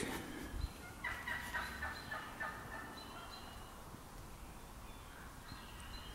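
Faint gobbling of a wild turkey: a rapid rattling call starting about a second in and lasting over a second.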